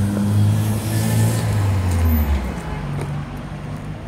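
A motor vehicle's engine running close by as a loud, steady low drone that drops away about two and a half seconds in.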